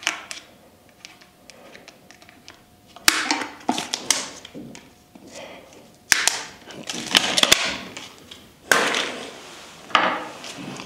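Small side cutters snipping the ties that hold a bike hook to its cardboard backing card: about four sharp snips, each followed by the card and packaging rustling as it is worked loose.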